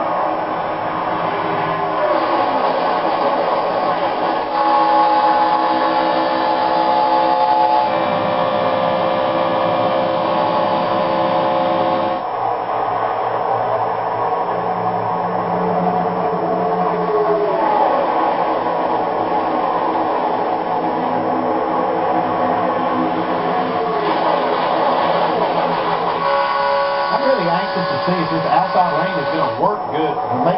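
A pack of NASCAR Cup cars' V8 engines running at full speed, heard through a television's speaker: a loud, steady drone of several pitches that changes abruptly several times, with a few falling-pitch passes as cars go by close.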